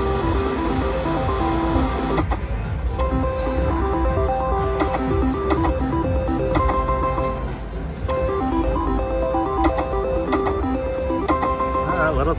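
Pinball reel slot machine playing its electronic spin tune of short stepped beeping notes, with sharp clicks as the reels stop, over a steady low casino rumble. The tune breaks off briefly about two seconds in, as one spin ends and the next begins.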